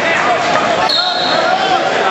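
Spectators yelling in a gym, with a referee's whistle blown once, short and high, about a second in, as the wrestlers are restarted from neutral.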